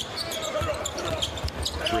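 Basketball being dribbled on a hardwood court: repeated low thuds of the ball hitting the floor.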